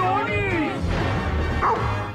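A dog vocalizing in two short calls that slide up and down in pitch, one at the start and one near the end, over background music with a steady beat.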